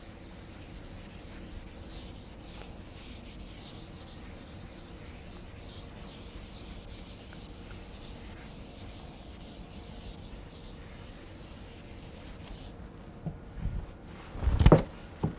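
Chalkboard duster rubbing across a chalkboard, wiping off chalk in many quick back-and-forth strokes, faint and scratchy; it stops just before the end.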